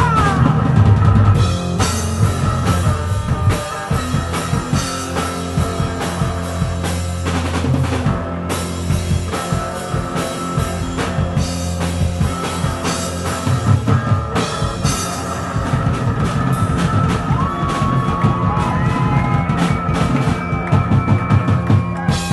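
Live rock band playing: electric guitar, bass guitar and drum kit, with held low bass notes under steady drumming and no singing. High gliding notes come in near the end.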